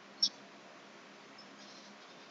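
One short, sharp click about a quarter second in, over faint steady room hiss and hum.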